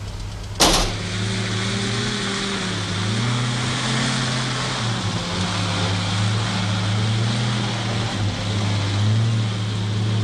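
Land Rover pickup driving across grass, its engine running steadily with small rises and falls in pitch as the throttle changes. A single sharp knock comes about half a second in.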